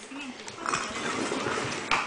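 A young child vocalizing without clear words, the pitch wavering up and down, with a sharp knock just before the end.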